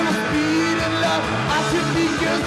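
Rock band playing, with electric guitars and drums.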